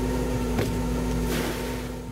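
Lobster boat's engine running steadily at sea, a low rumble with a steady hum, with a faint knock about half a second in.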